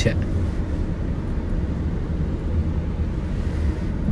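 Steady low rumble of a car on the move, heard from inside the cabin: engine and road noise.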